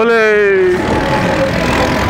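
A voice shouts a drawn-out 'Bhole', falling in pitch and ending just under a second in. Steady road and wind noise from riding on a two-wheeler in traffic runs under it and on to the end.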